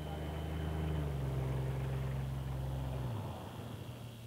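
A car's engine running, growing louder over the first second or two, then fading, with its low tone dropping and dying away about three seconds in.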